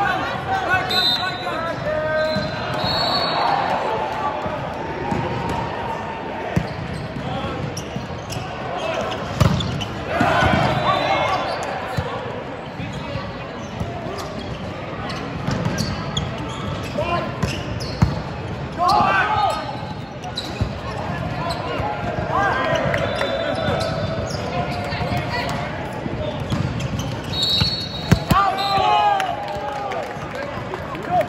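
Sounds of a volleyball rally in an echoing gym: sharp hits of the ball, short high squeaks of sneakers on the court, and players shouting calls. The shouts crowd together near the end as the point is won.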